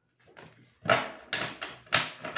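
Tarot cards being shuffled and handled on a table, giving a few sharp rustling slaps about a second in and again near the end.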